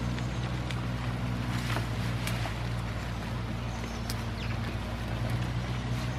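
Goats browsing a leafy plant, with scattered crackles and snaps of leaves being torn and chewed. Under it runs a steady low mechanical hum, the loudest sound throughout.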